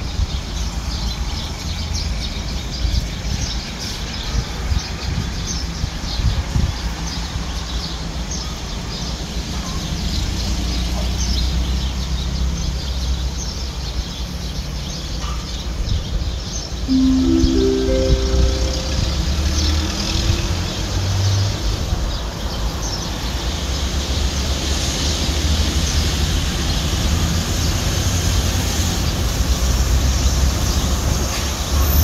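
Alstom diesel-electric locomotive approaching with a low, steady engine rumble that grows louder toward the end, with birds chirping throughout. About seventeen seconds in, a short run of four tones steps upward in pitch.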